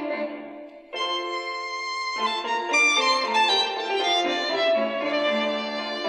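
Violin music playing through the small built-in speaker of a Tiemahun FS-086 emergency radio, played as a test of its sound. The music drops briefly just before a second in, then carries on.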